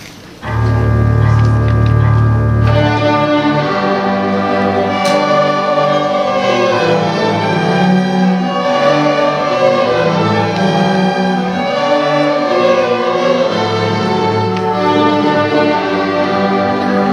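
A student string orchestra of violins and cellos starts playing about half a second in. It opens with a loud held low chord, then moves into a melody over sustained harmony.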